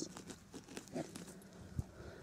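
Quiet pause with scattered faint clicks and small ticks, and one sharper click near the end.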